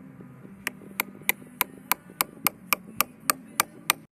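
Lump hammer striking a steel pin held against brickwork, driving it into the wall. About a dozen sharp metal-on-metal blows with a brief ring, at a steady pace of about three a second, beginning about half a second in.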